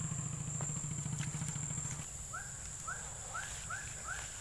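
A small engine drones low and steadily for the first two seconds, then stops, over a constant high insect whine. In the second half an animal gives a run of about six short rising-and-falling calls, roughly two or three a second.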